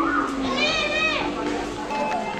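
A child's high-pitched voice calling out in one drawn-out squeal of about half a second near the middle, with other children's voices around it.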